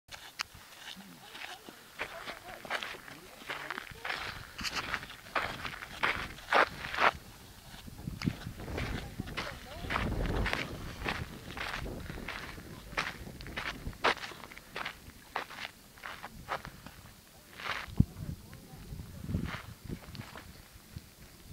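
Footsteps on a sandy dirt trail, a steady walking pace of about two steps a second, with a low rumble around the middle.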